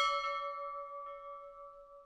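Ship's bell sound effect, struck once and ringing with several clear tones that fade away over about two seconds.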